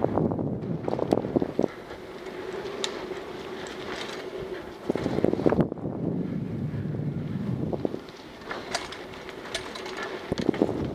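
Mountain bike ridden fast down a dirt trail: wind on the camera microphone and tyres rolling over the dirt, with the bike rattling and clacking over bumps, most sharply in the first second and a half and again around five seconds in.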